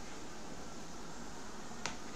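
A single sharp click near the end, over a steady low hiss.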